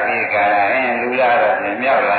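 A Buddhist monk's voice intoning a sermon in a steady, chant-like cadence.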